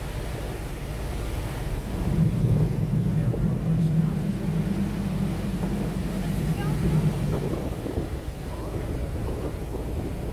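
Wind buffeting the microphone on a boat at sea, over a steady low rumble of the boat and water. It grows stronger and gustier from about two seconds in until about seven seconds.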